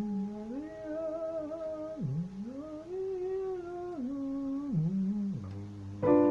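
A voice humming a wordless melody in several gliding phrases, over a piano note still ringing from the keyboard.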